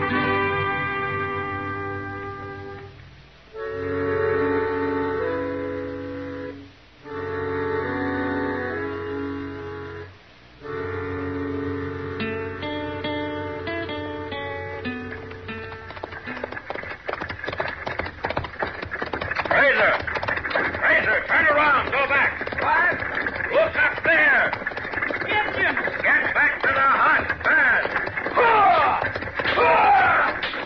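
Orchestral radio-drama music bridge in three short phrases, ending about sixteen seconds in. It gives way to a loud, dense din of many voices yelling and whooping over rapid clattering: a radio sound-effects scene of riders charging.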